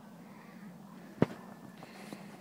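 A single sharp click about a second in, over a faint steady background.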